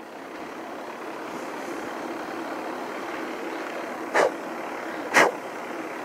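Steady road and wind noise of a bicycle rolling along asphalt, with two short sharp puffs of breath about four and five seconds in, blowing insects away.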